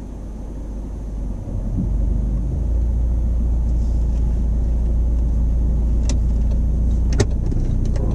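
Car engine and road rumble heard inside the cabin, a deep drone that builds over the first couple of seconds as the car gets under way and then holds steady. A short sharp click sounds about seven seconds in.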